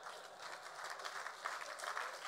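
Light audience applause, faint clapping that grows a little louder.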